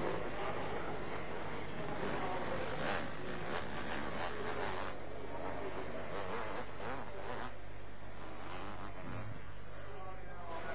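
Two-stroke motocross race bikes at full race, their engines revving up and down over the course.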